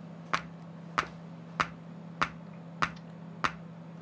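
Bare subwoofer driver pulsed by an LM555 timer circuit's square wave, its cone giving a sharp click on each pulse: six evenly spaced clicks, about one every 0.6 seconds, faster than the circuit's LED flash rate. A faint steady hum runs underneath.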